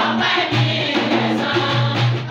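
A group of voices singing a devotional chant in chorus, in short held notes that repeat in a steady rhythm.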